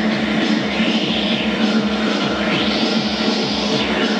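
Live electronic band music played on synthesizers and keyboards, over a steady low kick pulse and a held bass note. A bright synth sweep rises and falls twice, once about a second in and again near the end.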